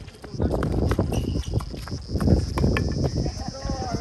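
Live sound of a doubles tennis rally on a hard court: sharp racket-on-ball hits and shoe steps on the court surface, over a steady high chirring of night insects.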